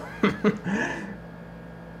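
A man's brief laugh, a few quick bursts in the first second, then only a steady electrical hum in the room.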